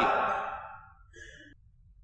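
A man's speaking voice trails off and fades over about a second, followed by a brief faint breath, then a near-silent pause.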